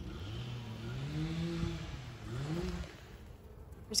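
A motor vehicle's engine accelerating. Its hum rises in pitch for over a second, drops back, then climbs briefly again before fading.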